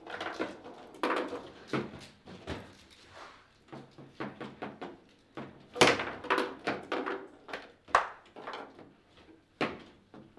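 Table football (foosball) in play: the ball struck by the rod-mounted figures and the rods knocking in the table, a rapid, irregular string of sharp knocks and clacks. The loudest hits come a little before six seconds and about eight seconds in.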